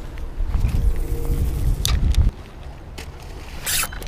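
A cast with a spinning rod and reel: a low rumble of wind and clothing on the body-worn microphone for about two seconds that stops abruptly, a click, then a short zip near the end.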